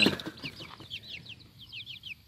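Two-week-old baby chicks peeping: many short, high peeps that fall in pitch, overlapping several a second, louder in the first second and fainter after.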